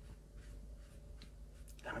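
Paintbrush stroking across watercolour paper: faint, soft, scattered brushing sounds over a low steady hum.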